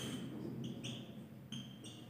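Whiteboard marker squeaking faintly as it writes: a string of short, high squeaks at irregular intervals.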